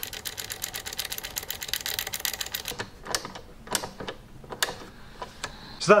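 Mini offset ratchet screwdriver clicking rapidly for about three seconds as a screw is driven with its quick rotation knob, then a few single clicks.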